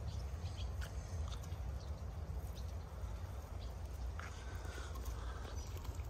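Hens making occasional soft, short clucks and chirps while they feed, over a steady low rumble.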